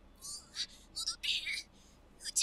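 High-pitched character voice from the anime's dialogue, speaking in short breathy phrases that bend up and down in pitch, loudest about a second in.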